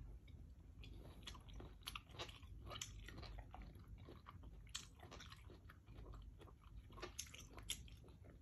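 Close-up chewing of soft, ripe melon, with irregular small wet clicks and smacks of the mouth throughout.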